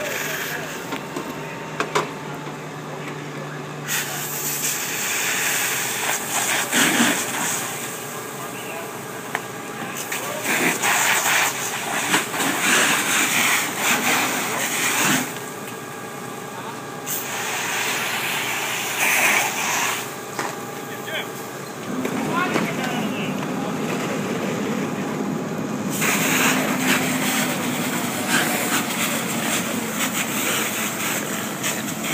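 Fire hose stream spraying onto a burning vehicle, a loud hiss of water and steam that comes in several long bursts with short pauses, over a steady engine hum.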